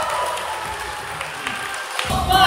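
Applause from a roomful of dancers, a soft, even patter of clapping between runs of the routine.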